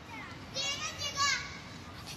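Children's voices calling out as they play, two short high-pitched shouts about a second in.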